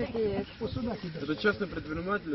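Speech only: people talking, indistinct and unclear enough that no words can be made out.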